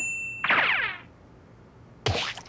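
Cartoon sound effect: a brief high ping, then a quick downward-sliding tone about half a second long.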